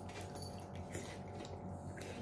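Faint mouth sounds of someone biting and chewing tender boiled pork leg held with chopsticks, with a few soft clicks over a steady low hum.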